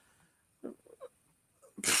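Near silence, with two faint short mouth sounds, then near the end a loud breathy "pfft": a man puffing air out into the microphone just before he speaks.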